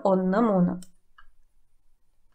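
A woman's voice finishes a phrase in the first second. A single sharp click follows just after, then near quiet.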